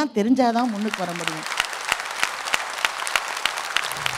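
Audience applause: many hands clapping, starting about a second in as the speaker's voice ends, and carrying on steadily to the end.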